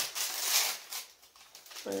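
Foil blind-bag wrappers crinkling and tearing as they are opened by hand. The noise comes in quick crackles for about the first second, then dies down.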